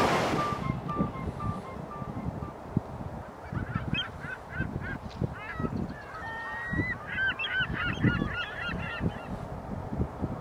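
Geese honking: a run of many short, overlapping calls from about three and a half seconds in until near the end, over a low, uneven rumble. A wash of surf fades out in the first second.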